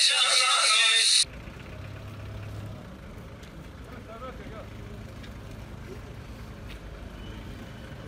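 Two men singing a Turkish folk song (türkü), cut off abruptly about a second in. Then quieter outdoor sound: a vehicle engine idling as a low steady hum, with faint voices.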